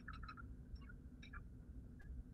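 Faint, quick clicks over a low, steady room hum, from slides being clicked ahead on the presenter's computer.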